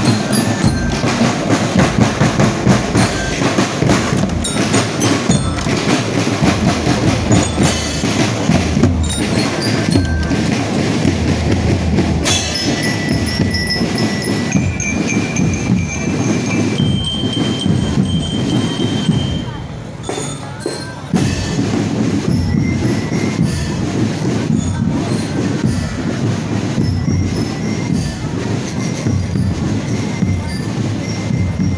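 Marching drum band playing: bass drums and snare drums beat a dense, fast rhythm with bell lyres, over crowd chatter. Around the middle, a few high steady tones sound, each a second or two long.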